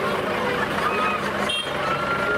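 Busy street ambience: a crowd of people chattering around the vehicles, with traffic and engines running steadily underneath.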